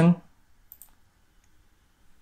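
A computer mouse button clicking once, faintly, about three quarters of a second in, after the end of a spoken word.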